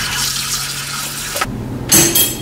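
Water running from a kitchen faucet into the sink while dishes are rinsed. The water cuts off about one and a half seconds in, and a short sharp knock follows right at the end.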